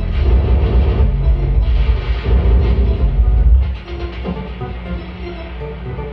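Live experimental electronic music from a tabletop rig of cabled electronics: a loud, deep bass drone with sustained tones over it. The drone drops away suddenly about three and a half seconds in, leaving quieter held tones.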